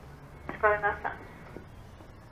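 A brief voiced sound of one or two syllables, about half a second long, with a sharp click just before it and another click about a second later.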